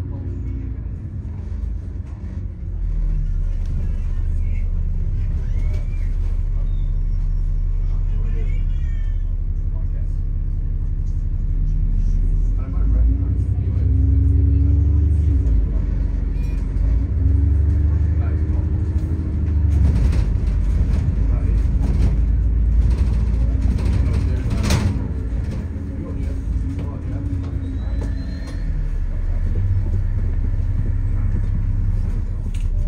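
Double-decker bus heard from its upper deck: a steady low rumble, with the drive pitch rising as it pulls away about halfway through, and body rattles a little later.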